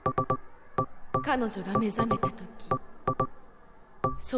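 Electronic music from a DJ set: short, beeping synth notes in an uneven pattern, with no bass drum under them, and a voice-like sample gliding down in pitch about a second in.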